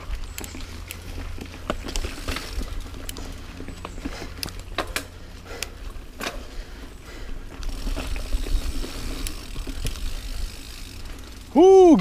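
Niner Jet 9 RDO mountain bike ridden over a rough dirt singletrack: scattered clicks, rattles and knocks from the bike over uneven ground, with a steady low rumble of tyres and wind on the camera microphone. A shouted voice starts just before the end.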